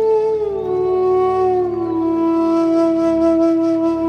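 Bansuri (bamboo flute) playing one long held note that slides down in two steps early on, then holds, over a steady low drone.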